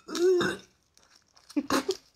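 A woman's short 'ooh' through pursed lips, then after a pause of about a second, a brief throat-clearing.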